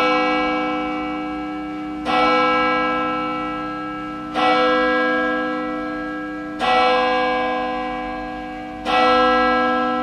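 A church bell tolling slowly, struck about every two seconds, each stroke ringing on and fading before the next.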